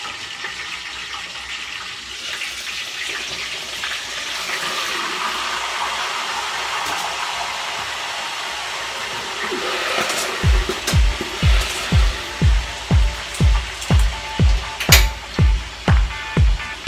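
Pork sizzling in hot frying oil, a steady hiss, as a piece of crispy pata is turned in the pan. About two-thirds of the way in, dance music with a steady beat of about two beats a second comes in over it.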